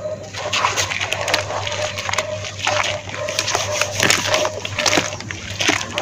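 A hand squeezing and stirring wet red dirt slurry in a bowl: a run of irregular wet squelches and splashes.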